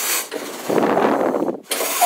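Air from a pedal-worked bellows rushing out of the outlet hole in a homemade accordion tuning table: a noisy hiss that swells to its loudest in the middle, blowing onto the microphone held just above the hole.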